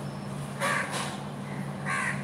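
A bird calling twice, two short calls about a second and a half apart, over a steady low hum.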